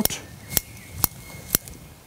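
Scissors (root shears) snipping off the growing tips of a Japanese maple's shoots, three crisp snips about half a second apart.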